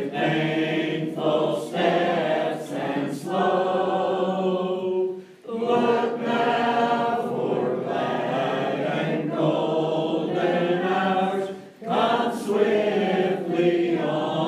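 Mixed choir of men's and women's voices singing a hymn in long held phrases, with short breaks between phrases about five and a half seconds and twelve seconds in.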